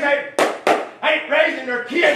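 Two sharp hand claps about a third of a second apart, over a man's preaching voice.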